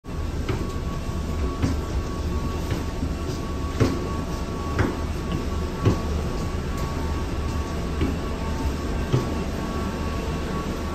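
Footsteps knocking about once a second on the floor of an airport boarding bridge, over a steady low rumble with a faint steady whine.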